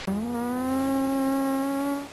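A single held buzzing tone that slides up slightly in pitch at the start, then holds steady for about two seconds and stops.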